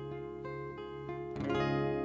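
Acoustic guitar picking single notes, about three a second, over ringing strings, then a full strum about one and a half seconds in.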